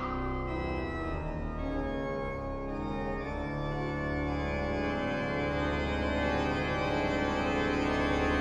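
Church organ playing alone: sustained chords over deep pedal notes, growing gradually louder.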